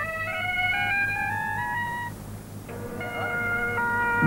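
Bagpipes being tuned: a note climbs in steps for about two seconds, breaks off, then a steady held note sets in near the end, over a low hum.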